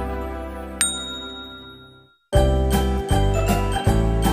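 Background music with a jingly, bell-like sound, fading out with a single bright chime ding about a second in. After a brief silence just past the two-second mark the music starts again with a steady beat.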